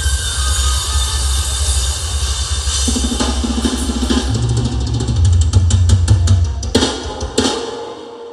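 Live band ending a song on the drum kit: a fast snare roll builds over a couple of seconds, then two hard accented closing hits land about half a second apart, and the music dies away.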